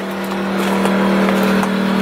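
Small portable generator engine running steadily with an even hum, growing gradually louder.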